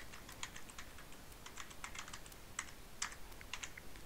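Computer keyboard being typed on: a quick, irregular run of keystroke clicks as a short phrase is typed out.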